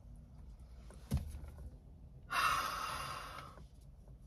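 A long sniff in through the nose at a paper perfume tester strip held under the nose, lasting a little over a second and fading out. A short soft knock comes about a second earlier.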